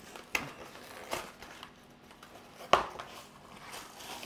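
A cardboard pizza box being torn open and a shrink-wrapped frozen pizza slid out of it. Rustling and several sharp crackles of card and plastic, the loudest nearly three seconds in.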